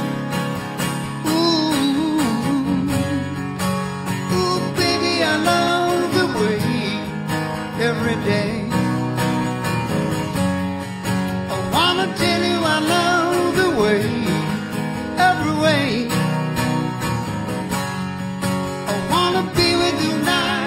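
Two acoustic guitars playing an instrumental break: a strummed chord rhythm with a melody of bending, sliding notes over it.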